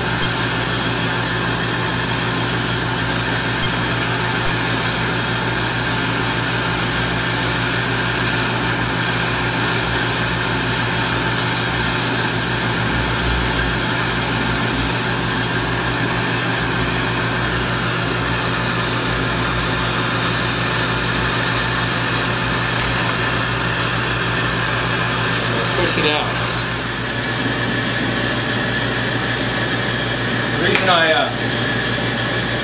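Gas crossfire burners running with a steady rushing noise while neon glass tubing is heated in their flames for a bend, with a constant low hum underneath.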